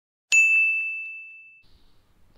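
A single bright ding sound effect, struck about a third of a second in and ringing out as one clear tone that fades over about a second and a half.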